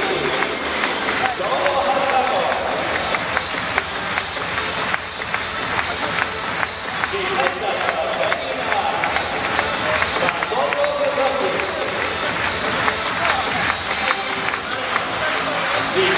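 Music played over a stadium's public-address loudspeakers, mixed with voices and crowd noise from the stands.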